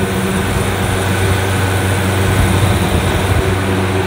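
Bohn refrigeration condensing unit running: condenser fans and compressor making a steady loud drone with a low hum.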